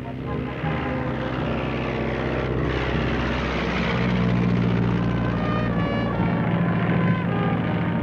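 Propeller-driven biplane's piston engine running in a steady drone, getting a little louder about halfway through.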